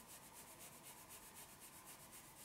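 Faint, quick rubbing of hands over a cotton pajama sleeve during an arm massage, an even run of about seven short strokes a second.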